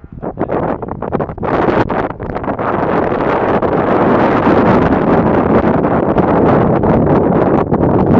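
Wind buffeting the microphone: loud, even rumbling noise that builds over the first two seconds and then holds steady.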